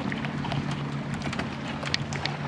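Footsteps on a dock, irregular light knocks, over the steady low drone of a motorboat engine running out on the lake.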